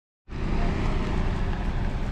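A minivan driving slowly past close by: steady engine and tyre noise on asphalt, heavy in the low end, starting abruptly a moment in.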